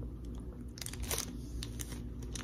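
Close-up chewing of a soft mouthful of Nutella crepe, with a few short wet clicks about a second in and again near the end.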